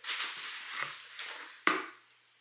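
Plastic bubble wrap rustling and crinkling as hands dig through it to pull a bottle out of a shipping box, with one sharper crinkle or knock near the end.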